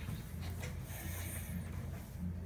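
Faint handling sounds of fingers pulling and working at a small rubber puzzle eraser, over a steady low hum.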